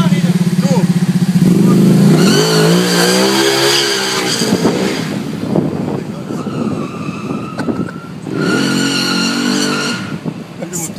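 Ducati 1199 Panigale S's V-twin engine running at low revs, then revved up and back down from about a second and a half in. It is revved again near the end.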